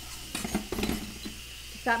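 Kitchen tongs clicking and knocking against a glass mixing bowl while spaghetti squash is tossed: a few short clinks in the first second.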